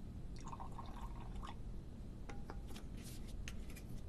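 Hot water poured from a vacuum flask into a cup for about a second, followed by a few light clinks of crockery as the flask and cup are handled.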